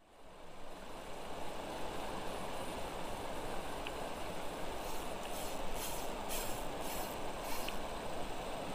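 Steady rush of a fast-flowing, shallow river running over rocks, fading in during the first second. A few brief high hisses come in the second half.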